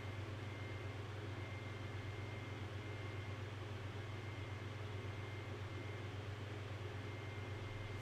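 Steady low electrical hum with faint hiss from an open microphone, unchanging throughout, with a faint thin high whine above it.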